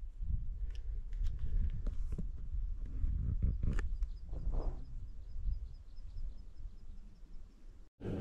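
Wind buffeting a body-worn action camera's microphone as a hiker walks on a mountain track, with the scuff of footsteps and occasional knocks. A faint, high peep repeats several times a second through the second half.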